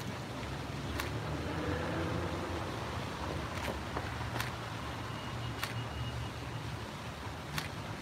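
Steady low rumble of city street traffic, with a few sharp clicks scattered through it.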